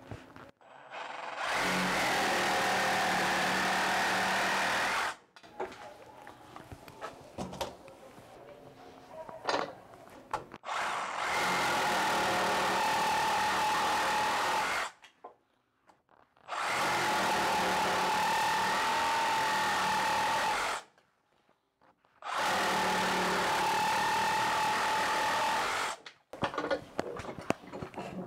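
Makita DJR187 18 V brushless cordless reciprocating saw cutting a 5×10 pine beam with a bi-metal blade on its high-speed setting (up to 3,000 strokes a minute). It runs steadily in four stretches of about four seconds each, with quieter pauses between.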